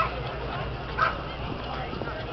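Two short, sharp animal calls about a second apart, over background chatter and a low steady hum.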